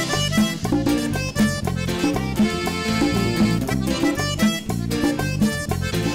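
A live band plays an instrumental passage: electric bass, guitar, drums and timbales under a melodic lead, on a steady dance beat.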